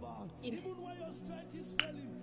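A single sharp click near the end, heard over a faint voice and a steady low background tone.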